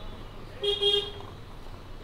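A vehicle horn toots once, briefly, about half a second in, over low street noise.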